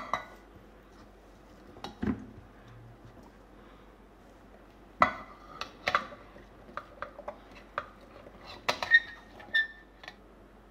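Steel bowl knocking and clinking against a stainless steel mixer jar as chopped apple pieces are tipped in: scattered sharp clinks with a quiet stretch in the middle, and a cluster near the end with short metallic rings.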